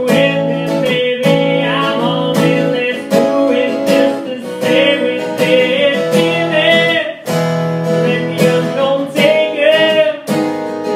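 Two acoustic guitars strummed in a steady rhythm under a man's sung melody.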